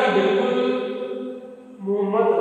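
A man's voice drawing out a word on one steady held pitch, chant-like, for about a second and a half, then a second held drawn-out syllable starting just before the end.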